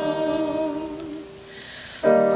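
Hymn singing: voices hold the last note of a line with a slight vibrato, then fade away about a second and a half in. After a short lull, the next line starts at the very end.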